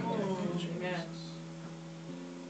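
A faint voice trails off in the first second, leaving a steady low hum of several sustained tones.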